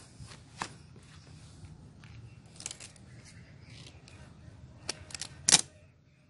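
Handling noise: faint rustling and a few sharp clicks, the loudest about five and a half seconds in as a hand grips the phone close over its lens.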